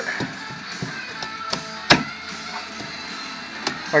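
Background music playing, with a few light taps and one sharp knock about two seconds in as a square drywall patch is pressed into the hole in the wall.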